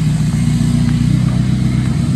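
Engine of the vehicle towing a car trailer, running at a steady low note as it pulls slowly away.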